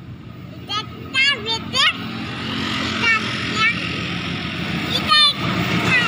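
Box-nosed diesel-electric locomotive hauling a passenger train toward the listener, its engine rumble growing steadily louder, with a motorcycle passing close by near the end.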